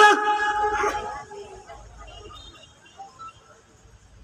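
A man shouts the drill command "Gerak!" once, loud and sharp, with an echo trailing for about a second. A low, faint background murmur follows.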